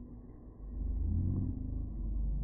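Deep, low rumble of a bullock cart race slowed down to slow-motion speed: the bullocks' running and the carts, with the crowd, stretched into a low drone with no high sounds. It swells louder a little over half a second in.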